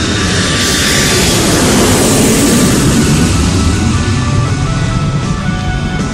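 Airplane sound effect over background music: a rushing aircraft noise swells up about half a second in, peaks in the middle and fades away, like a plane passing or taking off.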